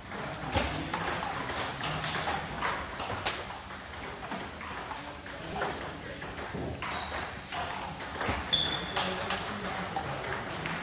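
Table tennis ball being hit back and forth in a rally. It clicks off the rackets and bounces on the table, a string of sharp hits about half a second apart, several ringing with a short high ping.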